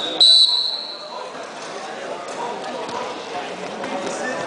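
Referee's whistle blown in one high, steady blast that fades out after about a second, signalling the start of the wrestling bout; a murmur of voices in the hall follows.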